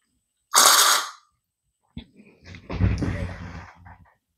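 A short sharp hiss about half a second in, then a click and a second or so of rustling and knocking as the stainless steel oil-extraction syringe and its silicone tube are lifted out of the RC excavator.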